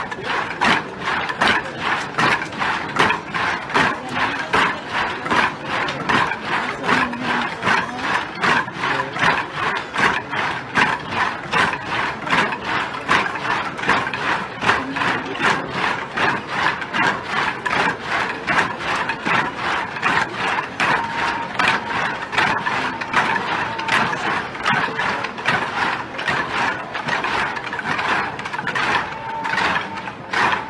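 Many wooden sticks clacked together in a steady marching rhythm, about two clacks a second, by a large column of marchers.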